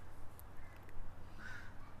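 A short bird call about one and a half seconds in, followed by a fainter one, over a steady low background hum.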